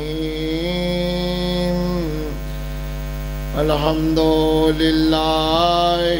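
A man's voice chanting Quranic recitation in Arabic through a microphone, in long drawn-out melodic notes that glide slowly, with a brief dip about three and a half seconds in. A steady electrical mains hum from the sound system runs underneath.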